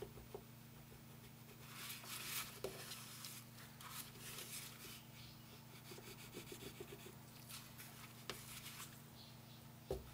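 Faint, intermittent rubbing of a gloved finger and IPA-dampened paper towel on the glass LCD screen of an Anycubic Photon Mono resin 3D printer, working off a spot of cured resin, over a steady low hum.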